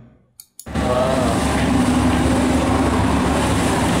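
Soundtrack of a short video clip playing back: a motorboat running on open water, a steady engine hum under the noise of water and wind. It starts abruptly about half a second in.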